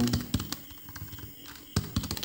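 Computer keyboard typing: a few irregular keystrokes with short gaps between them.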